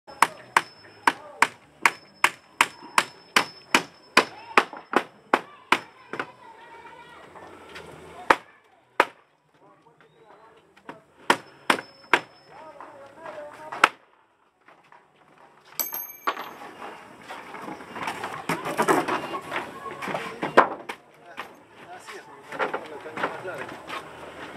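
Hammer driving nails, a quick steady run of about fifteen ringing strikes in the first six seconds, then a few scattered blows. In the second half the hammering gives way to voices and general work noise.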